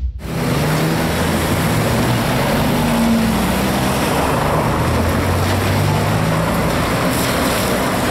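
City street traffic: vehicle engines running close by over a steady wash of road and street noise.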